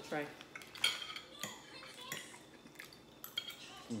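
Forks clicking against dinner plates as food is picked up: a handful of sharp, irregular clinks.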